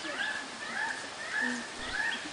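An animal giving a series of short, high whining calls, about two a second.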